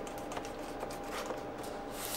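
Faint, irregular small clicks and scrapes of hands working a battery pack's plastic case and a utility knife, over a faint steady hum.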